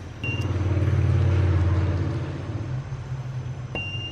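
A low engine rumble, as of a motor vehicle passing by, swelling over the first two seconds and then fading. A faint high-pitched tone sounds briefly near the start and again near the end.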